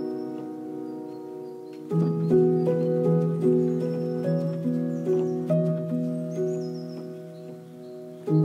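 Background music: held keyboard chords that shift every half second or so, over light, regular ticking percussion, with a fuller chord coming in about two seconds in. A few short, high chirps sit above the music.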